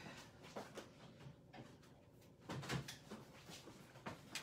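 Faint clicks and light knocks of stamping supplies being picked up and handled on a craft table, with a slightly louder cluster of taps about two and a half seconds in.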